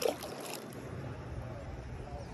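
Steady wind on the phone's microphone over open lake water, following a brief sharp sound at the very start.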